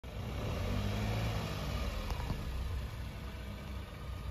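Tata Nexon SUV's engine running low and steady as the car creeps over the crest of a dirt slope, easing slightly after the first second or so, with a faint click about two seconds in.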